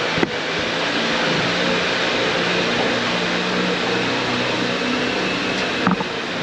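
Lifted Jeep driving slowly: a steady low engine hum under a constant rushing noise, with a light knock just after the start and another near the end.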